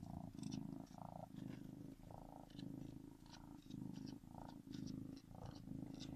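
Kitten purring steadily, the purr swelling and easing about twice a second with each breath in and out.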